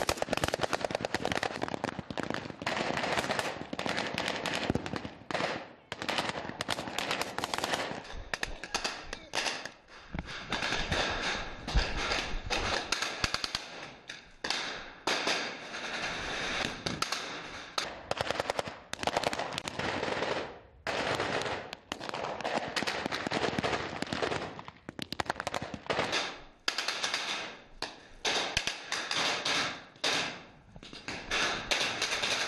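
Rapid gunfire from several assault rifles: automatic bursts and quick single shots that run almost without a break, with a few short pauses.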